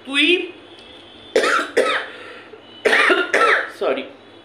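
A woman's voice in short, separate bursts: about five brief vocal sounds with sliding pitch, in two clusters with pauses between them.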